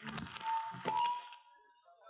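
Brief burst of live band instruments between songs: a couple of low drum hits under noisy stage sound and one held high note lasting about a second, heard through a cleaned-up cassette recording.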